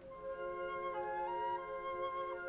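Symphonic wind band playing a soft passage: a flute melody that steps down about a second in and climbs back up, over held chords in the lower winds.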